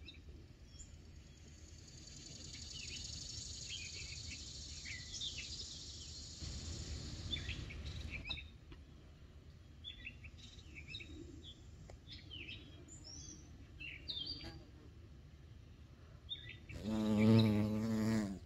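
Small birds chirping in the background, with a bee's wings buzzing loudly close by for about a second near the end as it takes off from the flowers.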